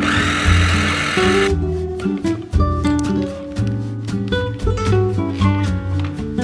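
Electric mini food chopper whirring in one short pulse as it chops parsley, cutting off about a second and a half in. Background music with acoustic guitar plays throughout.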